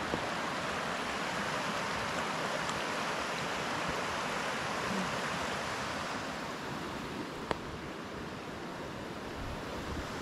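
Shallow creek running over a gravel bed, a steady rushing hiss that softens a little in the second half. A single short click about three-quarters of the way through.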